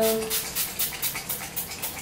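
Fine-mist pump spray bottle of facial toner being pumped repeatedly onto a tissue: a quick run of short hissing sprays, several a second.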